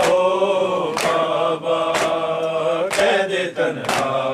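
A group of men chanting an Urdu noha (mourning lament) in unison, holding long notes, with hands striking chests in matam about once a second.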